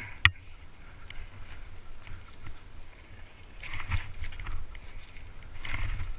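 Mountain bike riding down a rough, muddy trail, heard from a helmet-mounted camera: a sharp knock just after the start, then steady tyre rumble with the clatter and rattle of the bike over the rough ground, busier about four seconds in and again near the end.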